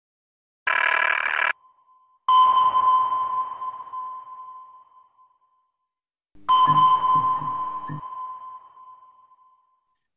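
Logo sting sound effect: a short glitchy electronic burst, then two sonar-style pings, each a steady high tone that rings and fades over about three seconds. The second ping has a low pulsing synth layer under it.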